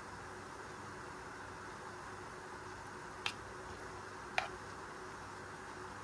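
A teaspoon scraping thick batter off a measuring spoon into small puto molds, with two light clicks of spoon against spoon about a second apart, over a faint steady hum.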